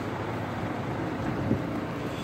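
Forklift engine running steadily under an even haze of noise, with one small knock about one and a half seconds in.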